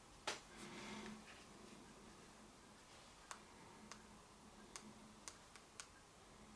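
Near silence broken by a few faint, irregular clicks, the buttons of a small card-type infrared remote control being pressed, most of them in the second half, after a soft knock just after the start.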